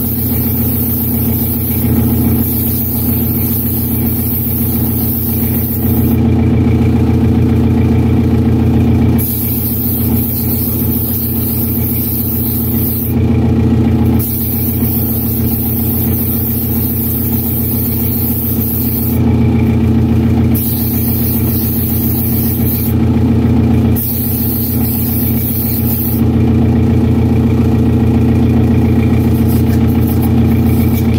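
Airbrush spraying paint in repeated hissing bursts, about five, the longest near the end, over a steady motor hum.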